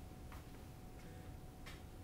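Quiet room tone with a faint steady hum and a few faint, short ticks.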